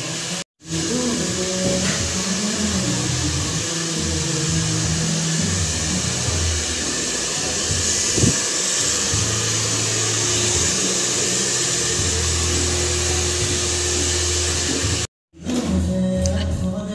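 A salon hair dryer blowing steadily under background music with a moving bass line. The sound cuts out completely for a moment about half a second in and again about a second before the end.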